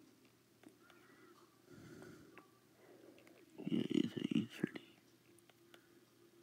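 Quiet, indistinct speech with no clear words, loudest for about a second around four seconds in, with a few faint clicks.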